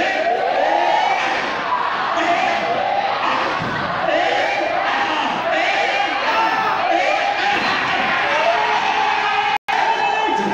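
A crowd calling out and cheering together, many voices overlapping loudly without a break. The sound cuts out for an instant near the end.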